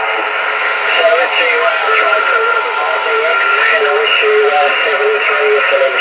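Single-sideband voice received over the RS-44 amateur satellite and heard from the receiver's speaker: a distant station's speech, thin and band-limited, under constant hiss with faint steady tones beneath it.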